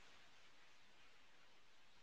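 Near silence: faint, steady room tone.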